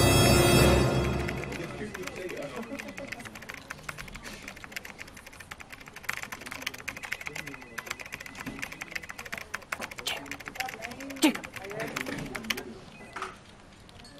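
Music fades out in the first second or two, then fast typing on an Apple aluminium computer keyboard: a dense run of key clicks that stops a second or so before the end.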